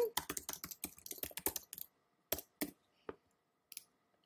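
Typing on a computer keyboard: a quick run of keystrokes for about the first two seconds, then a few separate clicks.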